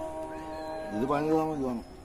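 A cat's long meow about halfway through, rising and then falling in pitch.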